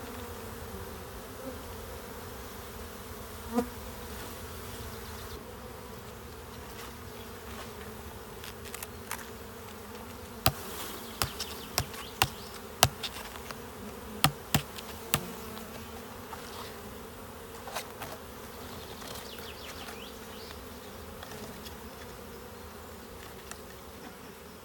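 Steady buzzing of a honeybee colony from an open hive full of bees. A single sharp knock a few seconds in and a quick string of sharp wooden clicks and knocks near the middle as the hive frames are handled.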